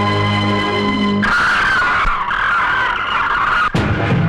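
Film score: a held low chord for about a second, then a shrill, wavering high tone for about two and a half seconds that cuts off abruptly near the end.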